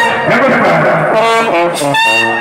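Indian brass wedding band playing, with trumpets carrying a melody of separate held notes over the band.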